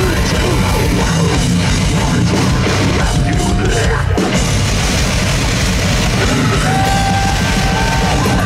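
Live heavy metal band playing loud, distorted guitars over a drum kit through a festival PA, heard from inside the crowd, with a brief break in the low end about four seconds in.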